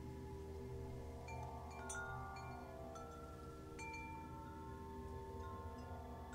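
Soft background music of slow chime-like bell notes ringing over long held tones, with a few new notes struck about one, two and four seconds in.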